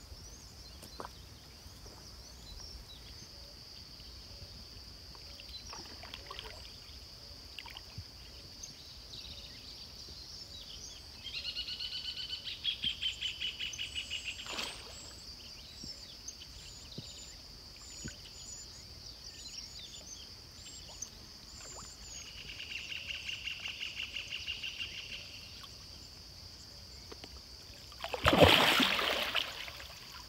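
Pond-side ambience: a steady high-pitched drone with scattered bird chirps and two rapid trilled calls, each about three seconds long, one a little over ten seconds in and one a little over twenty seconds in. Near the end comes the loudest sound, a splash lasting about a second and a half as a large fish breaks the surface near the bank.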